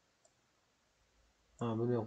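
A single faint computer mouse click about a quarter of a second in, as the application window is grabbed by its title bar to be dragged, followed by quiet room tone.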